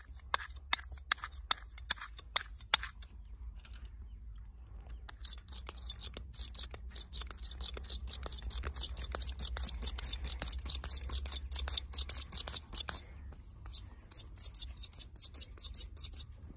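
Straight razor blade being honed on a small handheld whetstone: short scraping strokes, about three a second at first, then a faster, brighter run of strokes from about five seconds in to thirteen, with a few more strokes near the end.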